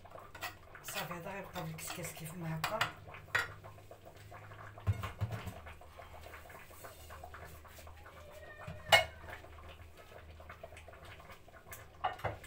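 A metal ladle and clay dishes clinking and knocking as couscous is scooped onto a clay platter and the bowl is moved, with a sharp clink about nine seconds in.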